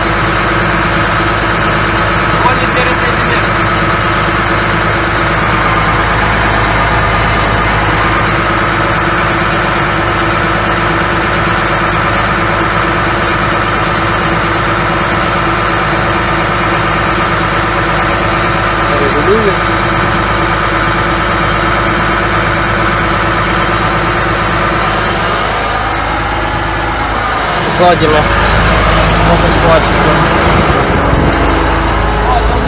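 John Deere 8320R tractor's six-cylinder diesel engine idling steadily, heard from inside the cab.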